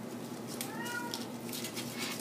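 A short high call with several overtones, rising then falling in pitch over about half a second, heard once about half a second in. Behind it are soft paper rustles and clicks as cardstock is folded by hand.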